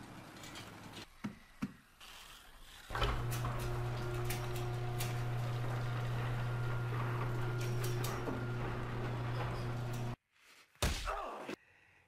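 Electric garage door opener running as a roll-up garage door closes: a steady low motor hum with rattling from the door, starting about three seconds in and stopping abruptly near the end, followed by a single thump.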